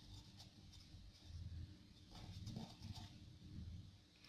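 Near silence: faint room hum with a few soft clicks and brief rubbing sounds.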